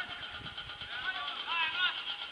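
Distant shouting voices of players and spectators across a football pitch, with no clear words.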